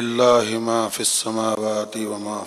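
A man's voice chanting in a sung recitation, holding close to one low pitch with syllables changing about twice a second.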